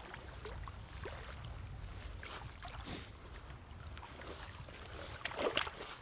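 Low rumble of wind and water at the shoreline, then a few splashes near the end as a hooked plaice is dragged out of the shallows onto seaweed.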